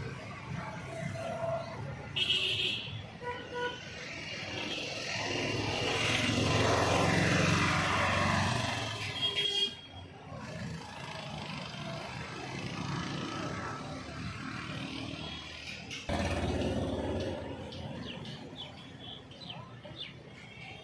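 Road traffic: a motor vehicle passes, growing louder and then fading over several seconds, with a short horn toot about two seconds in.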